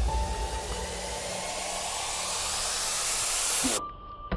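A hissing white-noise sweep, a build-up effect in the background music, rising and growing louder, then cutting off suddenly near the end.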